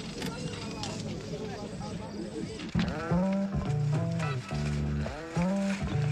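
Indistinct voices and background noise, then about three seconds in music enters: held low bass notes under a wavering, sliding melody line.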